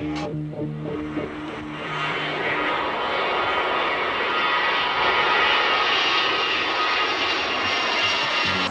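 Four-engine jet airliner flying low overhead, its engine noise growing louder over the first few seconds and then holding steady.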